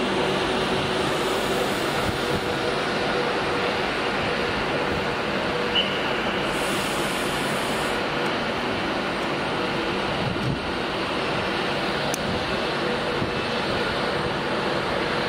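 Class 390 Pendolino electric multiple unit passing along the platform, with a steady rumble and hiss of wheels on rail and faint steady motor tones.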